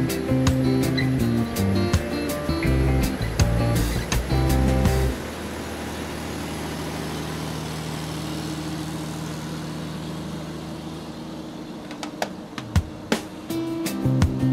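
Background music with a steady beat, which cuts off about five seconds in. It gives way to the steady drone of a moving vehicle, road noise with a low engine hum. The music's beat comes back near the end.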